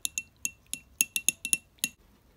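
Blunt steel drill bit stirring coffee in a small ceramic ramekin, its end clinking against the side of the dish in a quick, irregular run of sharp clinks, each with a short high ring.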